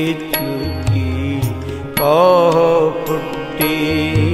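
Sikh shabad kirtan music between sung lines: a sustained melody with a wavering, bending phrase about halfway through, over a steady drone and regular drum strokes.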